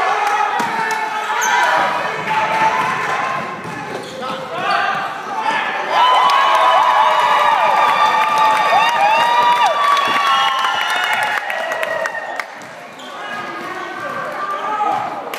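Basketball play on a gym's hardwood court: sneakers squeaking and the ball bouncing, with spectators' voices in an echoing hall. The squeaks are densest and loudest from about six to ten seconds in.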